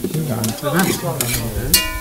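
Tomato sauce sizzling in a large cooking pot while a metal spoon stirs it, with a few scraping strokes. Near the end the spoon knocks sharply against the pot, which rings for about a second.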